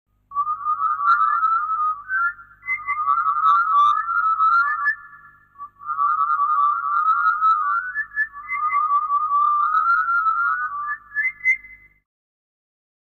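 A high, rapidly warbling whistle-like melody, played in four phrases of about two to three seconds each with a short pause near the middle.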